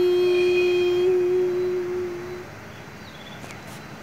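A woman's voice singing a Tai folk song (hát Thái) holds one long, steady note at the end of a phrase, fading out about two and a half seconds in.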